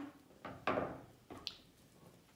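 A few short clicks and knocks of beads and tools being handled on a tabletop, the loudest about two-thirds of a second in.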